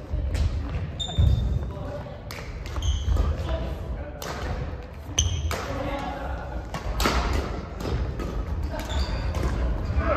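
Badminton rally in a mixed doubles match: rackets strike the shuttlecock in a quick back-and-forth, with brief shoe squeaks on the court floor and thudding footfalls, echoing in a large hall.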